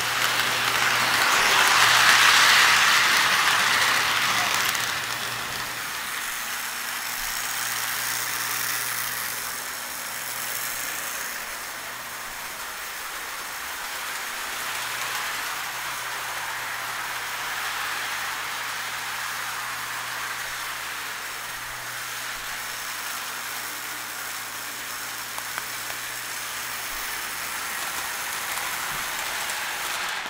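O gauge model train running on three-rail track: a steady rattling rumble of wheels and motor over a low hum. It is loudest as the locomotive passes close about two seconds in, then swells and fades as the train circles the layout.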